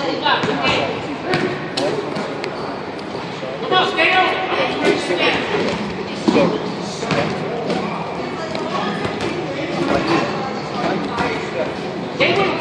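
Boxing gloves thudding in scattered strikes as two young boxers spar, with voices echoing in a large gym hall behind.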